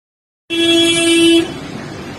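A vehicle horn sounds one steady blast of about a second, starting half a second in, followed by street noise.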